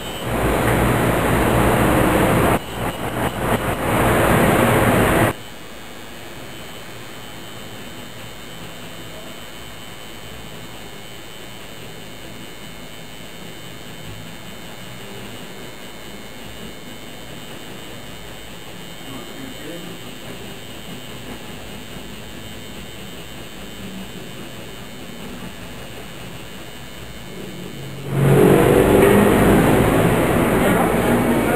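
Coil tattoo machine buzzing on skin. It is loud for the first five seconds and again near the end, and quieter and steady in between.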